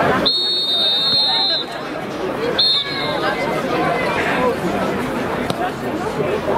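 Referee's whistle blown for the kickoff: one long steady blast of about a second and a half, then a short second blast about a second later, over spectators' chatter.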